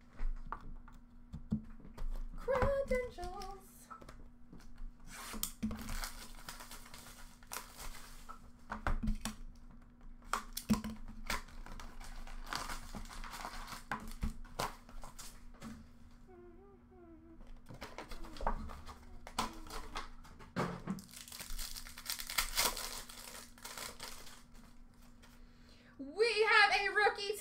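Foil trading-card pack wrappers being crinkled and torn open, with cards and packaging handled in irregular crackling bursts and small clicks. A steady low hum runs underneath.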